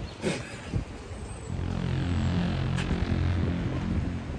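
A motor engine droning, coming in about a second and a half in and then holding steady.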